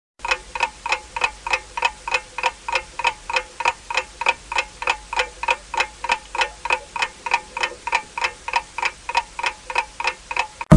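Clock-ticking sound effect for a countdown: a steady run of sharp ticks, about three a second.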